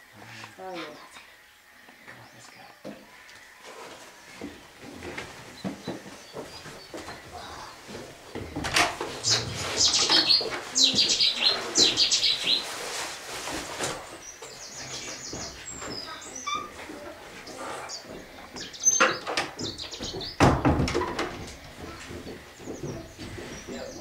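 Small birds chirping and singing in quick high phrases, loudest in the middle. There are scattered sharp clicks and knocks, the strongest about twenty seconds in, and low voices underneath.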